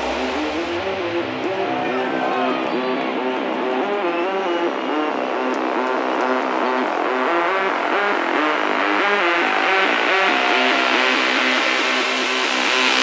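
Trance music over a club sound system in a breakdown: the kick and bass drop out at the start, leaving sustained synth chords and a stepping synth melody. A rising noise sweep builds toward the end.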